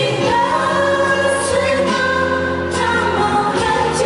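Women singing a song into microphones over backing music, with long held notes.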